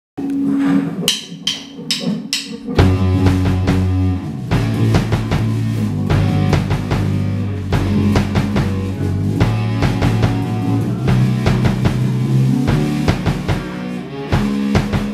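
Live rock band playing: a held low note and four sharp hits about half a second apart open it, then the full band with drum kit, bass and guitar comes in together about three seconds in and plays on with a steady beat.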